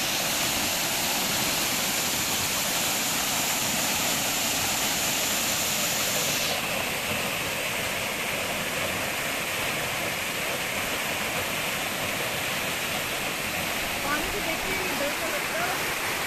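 Small waterfall cascading down a rock face into a shallow pool: a steady rush of falling water. The hiss turns duller about six and a half seconds in.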